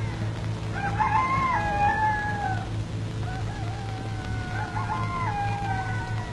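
A rooster crowing twice: two long calls of about two seconds each, both stepping down in pitch, over a steady low hum.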